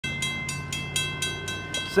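Railroad grade-crossing warning bell ringing in a fast, steady beat of about four strikes a second, sounding the crossing's warning for an approaching train. A low steady drone runs underneath.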